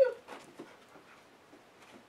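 A dog gives one short, rising whine right at the start, then only faint small taps as it moves about on the carpet.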